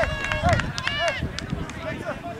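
Several voices shouting and calling at once across an open soccer field, overlapping and without clear words, over a low rumbling background.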